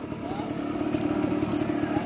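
Rusi motorcycle engine running steadily at low revs, an even hum with no revving.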